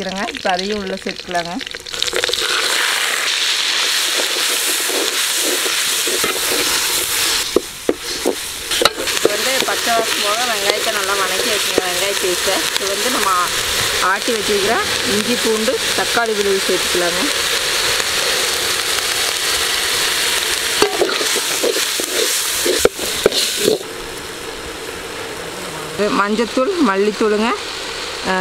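Ground masala paste dropped into hot oil in a metal wok, sizzling hard as it fries, with a spoon stirring and scraping against the pan. The loud sizzle starts about two seconds in when the paste goes in and eases to a quieter hiss a few seconds before the end.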